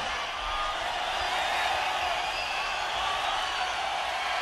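Large arena crowd cheering and yelling between songs at a live rock concert, a steady wash of noise with scattered shouts.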